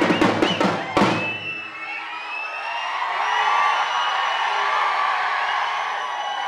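Fast live drumming that stops on a last strong beat about a second in, followed by a crowd cheering and whistling.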